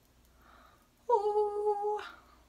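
A woman sings one steady held note with her mouth open, starting about a second in and lasting about a second.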